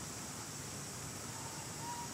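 Outdoor ambience with a steady high hiss and a faint, short, thin high-pitched animal call over the last second or so.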